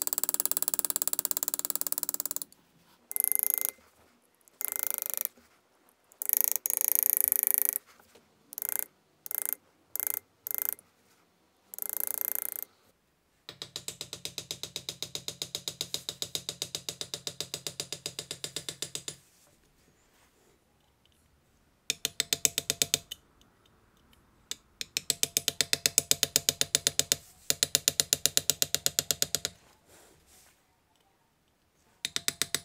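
A steel graver cutting into a brass plate held in an engraver's ball vise. First come separate scraping strokes, each from half a second to two seconds long. About halfway through comes a fast, even run of metallic taps, roughly a dozen a second, in three spells.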